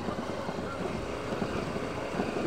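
Motorcycle engine running steadily as it rolls along at low speed, with wind buffeting the microphone.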